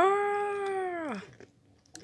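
A single long, meow-like vocal call: it rises quickly, holds one pitch for about a second, then falls away.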